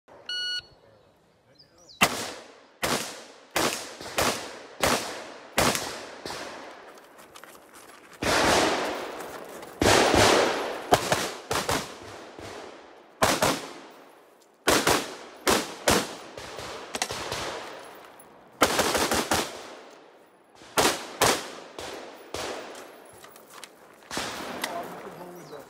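A shot timer gives one short start beep, then a handgun fires a long course of shots, in quick pairs and rapid strings broken by short pauses, each crack followed by a brief echo.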